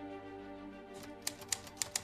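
Soft background music of sustained held notes; from about a second in, about five quick keystrokes clack on an Olivetti Lettera 22 portable manual typewriter.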